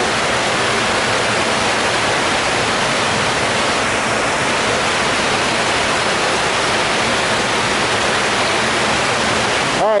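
Steady, loud rush of water cascading over rocks in an animal exhibit's stream, dropping away just before the end.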